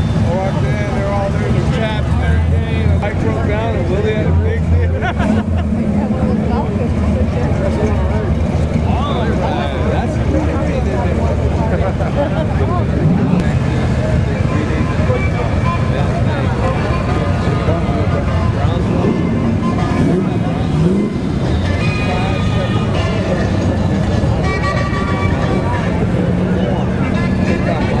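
Classic cars driving slowly past one after another, their engines running at low revs, with steady chatter from a crowd of onlookers close by.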